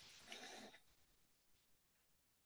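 Near silence on a webinar audio line, with a faint, brief breathy hiss in the first second.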